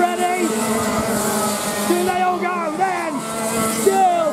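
Racing kart engines running as karts pass through a bend, with a commentator's voice over them.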